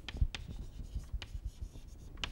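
Chalk writing on a chalkboard: a series of short taps and scratches as symbols are written.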